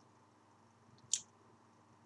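Near silence in a pause between sentences, broken once about halfway through by a short, wet mouth click.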